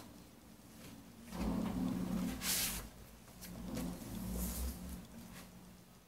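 Rustling and sliding of vinyl record sleeves being handled as a picture disc is taken out, with a brighter swish about two and a half seconds in.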